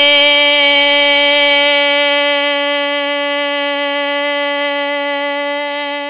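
A single long sung note held by a woman's voice, steady in pitch and slowly fading toward the end.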